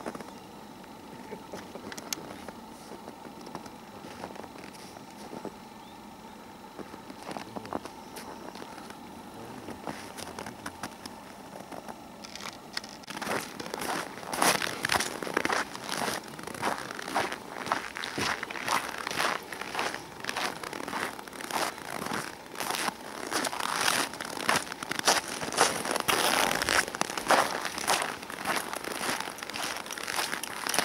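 Footsteps crunching in packed snow at a steady walking pace, about two steps a second, starting about halfway through after a quieter stretch.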